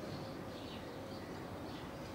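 Faint chirping of small birds, several short calls in a row, over steady background noise.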